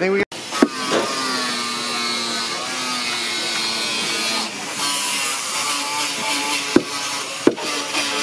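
An electric power tool's motor runs steadily, its pitch wavering slightly. A few sharp knocks come through, one about half a second in and two near the end.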